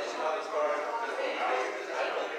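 Indistinct chatter of many people talking at once, with no single voice standing out.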